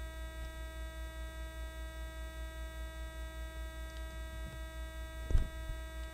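Steady electrical mains hum with a pulsing low buzz and a set of steady whining tones, the interference of a bad stream audio chain. A single sharp knock sounds a little past five seconds in.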